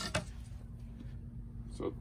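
Quiet indoor room tone with a steady low hum and a faint click just after the start; a spoken word near the end.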